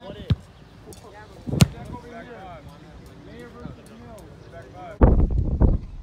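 Two sharp thumps of footballs being kicked on the field, the second louder, over faint distant voices. About five seconds in, a loud rush of wind noise on the microphone starts suddenly.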